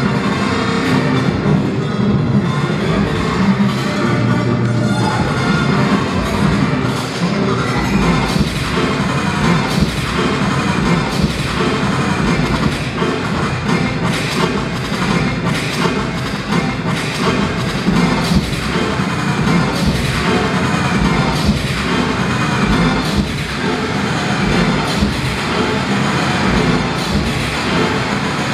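Live band playing an upbeat jam: grand piano with accordion, electric bass, electric guitar and keyboards, with a steady beat of strong accents through most of it.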